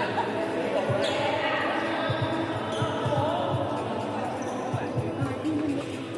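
Badminton play on a wooden hall floor: players' footsteps thudding on the court throughout, with a couple of sharp racket strikes on the shuttlecock, about one second and about three seconds in. Voices in a large, echoing hall underneath.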